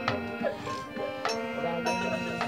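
Live Bengali kirtan music: steady held instrumental notes with sharp hand-drum and cymbal strokes about every half second.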